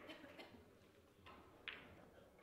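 Near silence, broken by four faint, short ticks and brushes.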